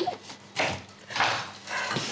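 A woman sniffling twice while crying, two short breathy sniffs about half a second apart.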